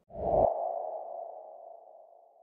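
Intro sting sound effect for an animated title card: a deep hit just after the start, with a ringing mid-pitched tone that fades away over the next two seconds or so.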